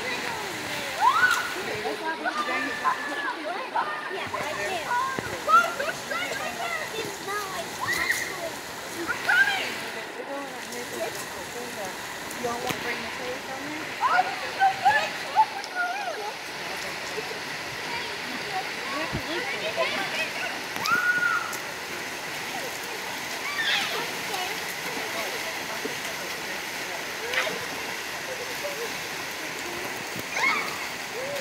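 Shallow river running over rocks, with splashing from children wading and swimming in it and their shouts and chatter coming and going throughout.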